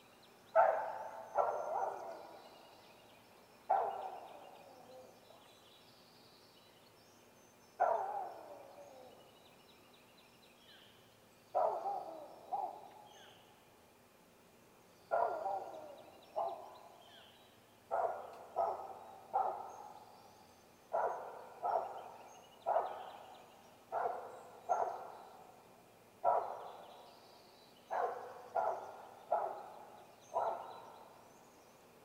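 A series of short, sharp animal calls or barks. They start singly, a few seconds apart, then come in quick pairs and triplets about once a second, and some of them slide down in pitch as they fade.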